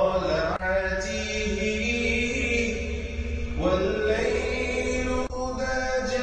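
Background music: a chanting voice holding long notes that glide between pitches, with brief breaks about half a second in and again near the end.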